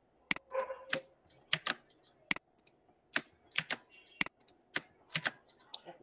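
Computer keyboard keystrokes: single sharp key clicks at uneven spacing, about two a second, as text is copied and pasted into a code editor.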